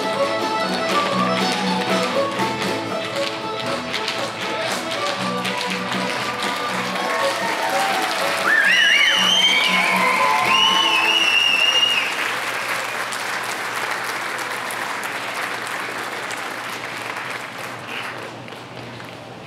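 A youth fiddle orchestra with guitar plays a Celtic tune to the dancers' rhythmic foot taps. About halfway through, the tune gives way to loud whoops from the crowd and players, followed by applause that slowly fades.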